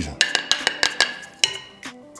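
Wooden spoon knocking and scraping against a small plate, a quick run of light knocks over the first second and a half, as the last of the seasoning is knocked off into the bowl of chicken.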